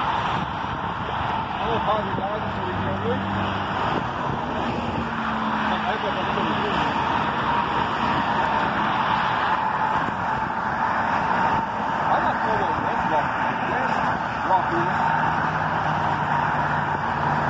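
Steady road traffic on a multi-lane road close by: cars passing one after another, their tyre and engine noise merging into a continuous hum.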